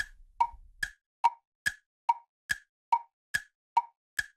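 Cartoon waiting-for-the-answer sound effect: a steady run of short hollow pops, about two and a half a second, alternating between a higher and a lower pitch like a tick-tock.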